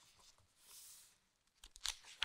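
Faint rustle of a book's paper page being handled and turned, with a few sharp crackles near the end.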